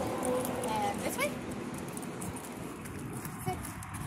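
A few brief, high, sliding vocal sounds in the first second or so, over steady outdoor street background noise.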